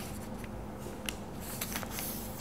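Faint rustling and creasing of a sheet of white paper being folded and pressed flat by hand on a tabletop, with a sharp little click about a second in and a few more near the end.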